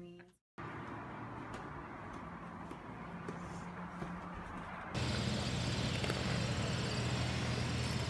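Light footsteps and gear handling over a low background hum, then after a sudden cut a louder, steady low engine drone in the open, from the aircraft and truck moving on the airfield.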